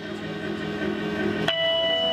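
Live band's music fading in: a low held chord, then about a second and a half in a bell-like note is struck and held.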